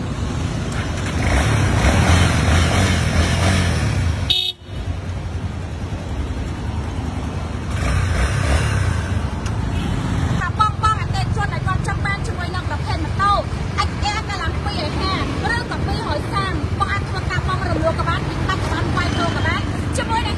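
Single-cylinder Honda XR dual-sport motorcycle engine running amid city street traffic, with a short horn toot about four seconds in.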